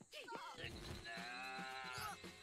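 Faint dialogue from the anime being watched: a character's voice drawn out into one long held sound lasting about a second and a half.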